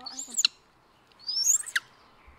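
Baby monkey giving two high-pitched squeaky calls, each a quick gliding squeal, the second about a second after the first.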